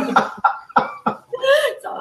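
People laughing in several short bursts, a man's hearty laughter with a woman's laughter.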